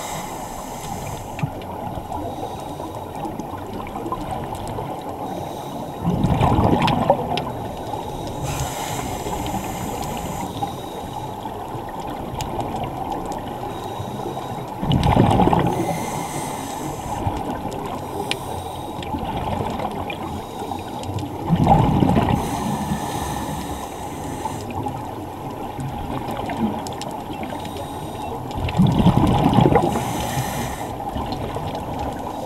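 A scuba diver breathing underwater through a regulator: four loud bubbling exhalations, about seven seconds apart, over a steady muffled water noise.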